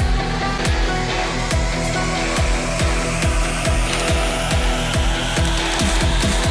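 Electronic background music with a steady kick drum under sustained synth tones, and a rising noise sweep building through the second half.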